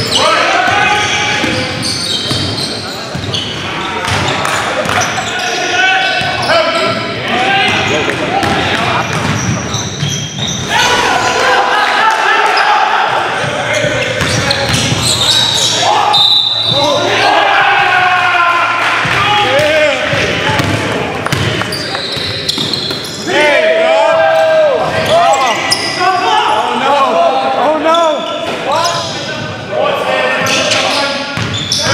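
Live basketball game sound in a gymnasium hall: a basketball dribbling on the hardwood floor amid indistinct shouting and chatter from players and onlookers, echoing.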